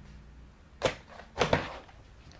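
Plastic battery release latches on the underside of an HP laptop clicking open and the battery pack being pulled out of its bay: two sharp clicks a little over half a second apart, the second louder.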